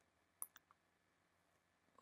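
Near silence, broken by three faint, quick clicks of computer input about half a second in.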